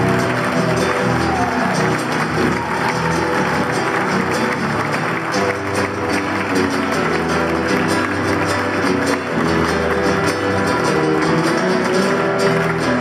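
Nylon-string acoustic guitar strummed in a steady rhythm, playing an instrumental passage of an Argentine folk song.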